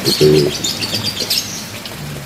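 Small birds chirping: a quick run of short, high chirps over the first second and a half.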